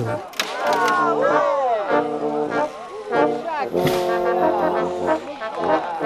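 Brass band music: trombones and trumpets playing held chords, with voices over the first two seconds.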